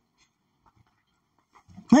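Near silence, a pause in a man's talk, with his voice starting again near the end.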